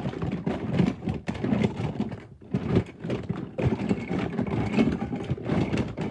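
Loud, irregular rustling and clattering with frequent small knocks, like close handling noise.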